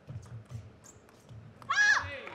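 A few faint clicks, then near the end a loud, high-pitched shout from a table tennis player: one short call that rises and falls in pitch.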